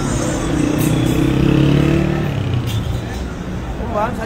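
A van's engine passing close by, its drone swelling and then fading away after about two seconds, over the steady noise of road traffic.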